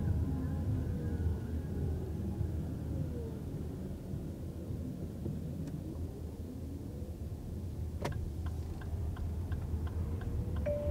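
Cabin sound of a 2024 Lexus RX350h hybrid pulling away at low speed: a steady low road and drivetrain rumble, with a faint whine gliding up and down early on. About eight seconds in, a click is followed by evenly spaced turn-signal ticks, a little over two a second.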